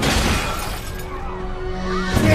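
Film score music, with a crash right at the start as a body slams onto a table and the dishes and glass on it shatter, the breakage ringing out over the next half second.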